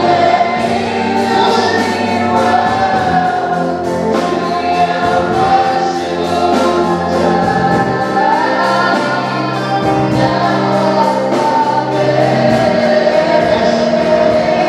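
Gospel worship song: a woman singing slow, sustained lines through a microphone over held electronic keyboard chords, with other voices possibly joining in.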